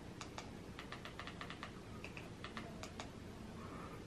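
Faint, quick, irregular clicking of a Fire TV remote's buttons as the cursor is stepped across the on-screen keyboard to type a search.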